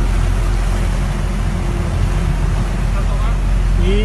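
Boat engine running steadily: a constant low rumble with a noisy hiss over it.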